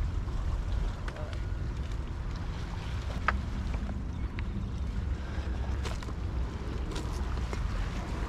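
Steady wind rumbling on the microphone, with a few faint, sharp clicks scattered through, the clearest a little past three seconds in.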